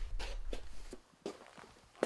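A few footsteps on a hard floor, short irregular steps, while a low rumble dies away about halfway through.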